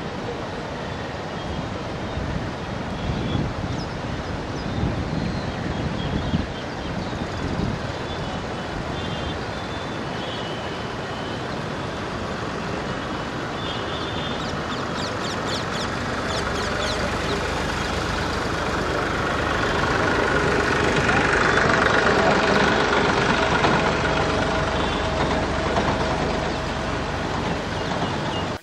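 Outdoor noise of road traffic and voices over a steady rush of water. A vehicle's engine grows louder through the second half and is loudest about three quarters of the way in.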